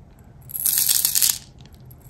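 Plastic airsoft BBs pouring from a small glass jar into a plastic BB loader: a dense rattle of many small clicks that starts about half a second in and lasts about a second.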